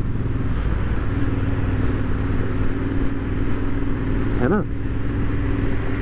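Royal Enfield Interceptor 650's parallel-twin engine, with aftermarket exhausts, running steadily under way over wind rush. A short spoken word cuts in near the end.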